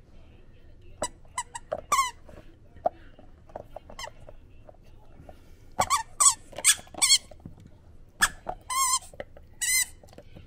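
Dog chewing a bare toy squeaker, setting off short, high, wavering squeaks in clusters: a few about a second in, then a run of them from about six seconds to the end.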